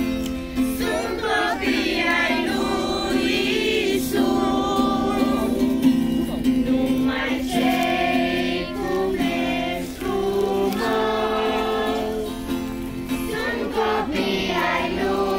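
A group of children singing a song together, accompanied by acoustic guitar.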